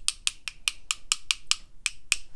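Two paintbrushes knocked together, the loaded brush tapped against the other's handle in a steady run of sharp clicks, about five a second, flicking spatters of watercolour paint off the bristles.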